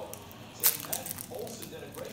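Foil wrapper of a Panini Optic baseball card pack being torn open and crinkled, with one sharp rip about two thirds of a second in.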